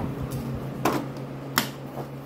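Two sharp clicks of hard plastic toy-house parts knocking and snapping together as a panel is fitted onto the frame, under a faint steady low hum.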